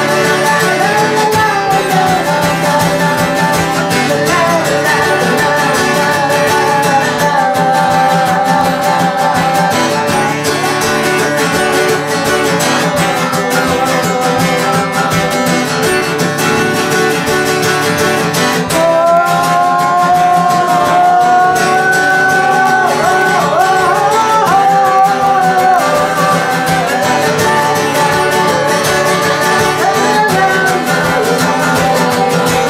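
A man singing while playing a strummed acoustic guitar, a solo song with guitar accompaniment; his voice stands out more strongly in the last third.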